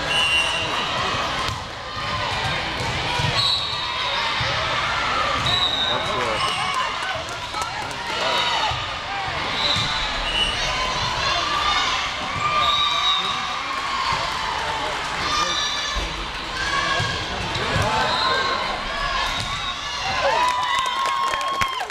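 Indoor volleyball rally: a serve and the ball being struck back and forth, heard as sharp knocks over constant chatter and calls from players and spectators.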